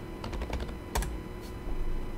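Keys and clicks on a computer keyboard: a quick run of clicks about a quarter second in, a sharper single click about a second in, and another fainter one shortly after.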